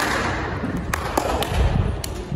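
Irregular low rumbling with about three sharp taps in the second half.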